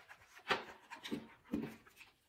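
Faint rustling and handling of a paperback picture book as its page is turned: a few short, soft rustles.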